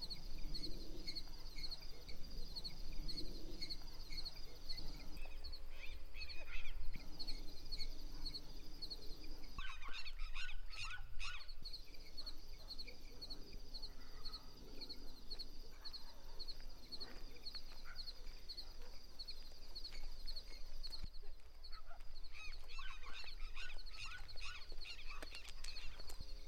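Countryside evening ambience: a steady, high-pitched insect chirring throughout, with farm fowl calling in bursts about ten seconds in and again near the end.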